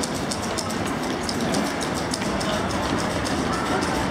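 Roadside ambience at a city marathon: a steady rumble with spectators' voices mixed in, and a fast, irregular patter of light clicks.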